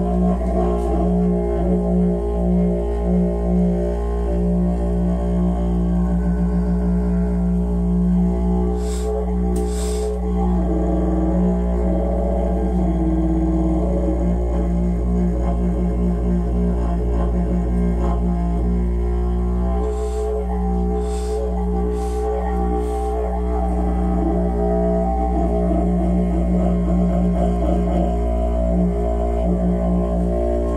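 Didgeridoo playing one continuous low drone without a break, its overtones shifting as the player changes mouth shape, played close over a person's body as a sound-bath massage. A few short sharp accents cut into the drone about nine seconds in and again around twenty seconds.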